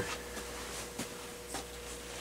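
Quiet handling sounds of hands fetching and picking up a light bulb: faint rustling with a couple of small light taps, over a faint steady hum.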